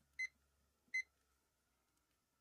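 Two short high beeps, under a second apart, from the buttons of a dachshund-shaped digital kitchen timer being pressed to set it to two minutes.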